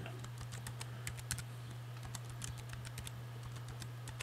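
Typing a word on a computer keyboard: a quick, uneven run of key clicks, over a steady low hum.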